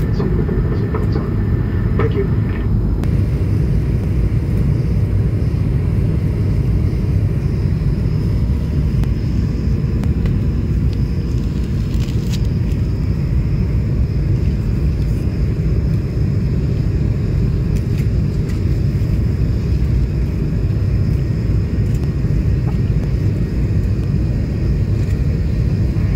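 Steady low roar in the economy cabin of an Airbus A220-300 in flight, from airflow and its Pratt & Whitney PW1500G geared turbofan engines, heard from a window seat as the descent begins.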